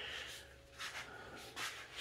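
A quiet breath out through the nose at the start, followed by a few faint, brief soft rustles.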